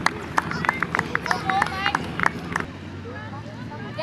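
Distant voices calling out across a junior soccer field, with scattered sharp knocks through the first half. From a little before three seconds in it goes quieter, leaving a low steady hum.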